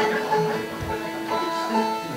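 A few single notes plucked on an acoustic string instrument and left to ring, one after another at different pitches: noodling between songs.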